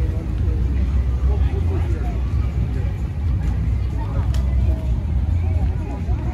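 Outdoor street ambience: indistinct voices of people over a steady low rumble, with one sharp click about four seconds in.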